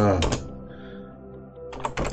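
A few computer keyboard keystrokes near the end, over a steady background hum.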